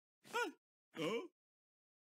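A cartoon woman's voice making two short wordless exclamations of shock, each about a third of a second, the first falling in pitch and the second dipping and rising.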